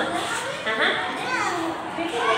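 Young children chattering, with high voices rising and falling.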